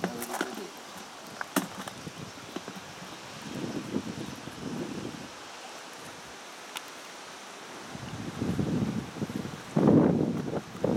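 Wind buffeting the microphone in outdoor air, swelling twice, with a few faint isolated clicks.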